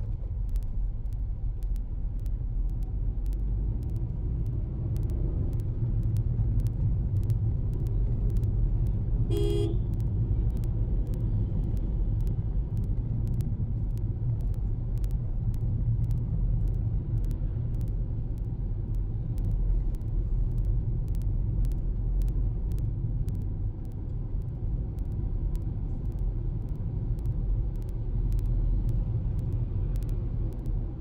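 Steady low rumble of a car's engine and tyres heard from inside the cabin while driving. A short horn toot sounds once, about nine and a half seconds in.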